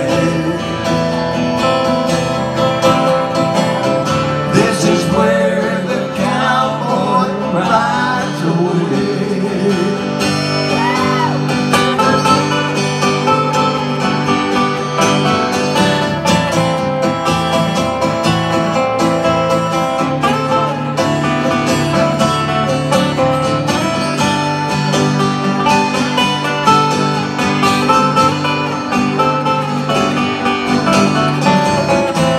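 Acoustic guitars playing an instrumental break in a slow country song: strummed chords under a lead melody whose notes bend and waver, most clearly a few seconds in.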